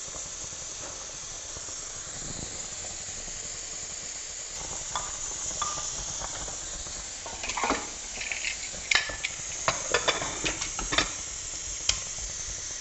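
Glory bower leaves sizzling with a steady hiss in a hot pressure cooker. In the second half a wooden spoon stirs them, with scrapes and knocks against the pot, and just before the end there is a sharp metallic click as the lid goes on.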